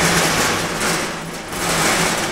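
Wheels of a heavy steel-strut mobile elevator frame rolling across a garage floor, a steady rolling noise as the frame is pushed sideways along the shelves.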